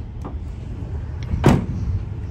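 Pickup truck tailgate shutting with a single loud bang about a second and a half in, as it latches closed.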